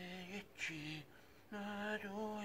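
A man's wordless voice in three short held tones on a steady pitch, the last one the longest.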